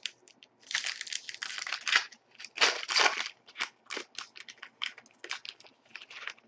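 Wrapper of a 2011-12 Upper Deck SP Authentic hockey card pack crinkling and tearing as it is opened by hand. There are two longer bursts, about a second in and about halfway, with many short crackles between.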